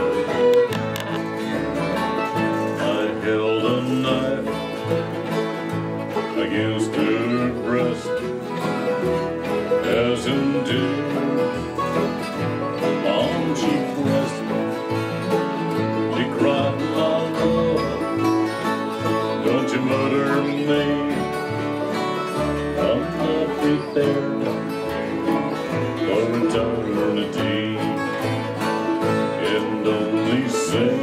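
Acoustic string band playing an instrumental break in a bluegrass style, with strummed acoustic guitar and other string instruments and no singing.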